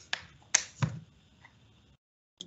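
Three short, sharp clicks in the first second, picked up by a video-call microphone, then silence.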